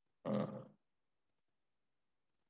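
A man's brief hesitant "uh", about half a second long, near the start.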